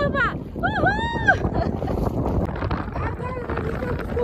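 Wind buffeting the microphone, with a person's excited whooping voice, one rising-and-falling whoop about a second in and a held cry near the end.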